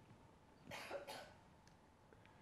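A faint, short cough in two quick bursts about a second in, against near-silent room tone.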